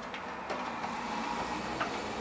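Framing clamp's central screw being turned by hand to draw the frame corners tight: a steady rasping whir of the threads with a few small ticks, starting about half a second in and stopping just before the end.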